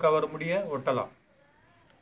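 A man's voice speaking in a drawn-out, pitch-bending way, breaking off about a second in, then near silence.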